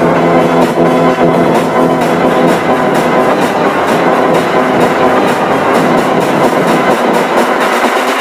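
Loud, heavily distorted music with a fast, even beat, run through the layered pitch-shifted 'G Major' audio effect.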